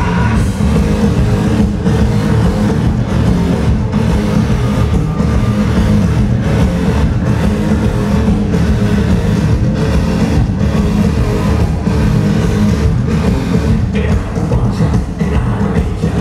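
A live industrial-metal band playing loud, with distorted guitars, bass, keyboards and drums in a dense, heavy wall of sound. It is recorded from the audience on a camcorder microphone.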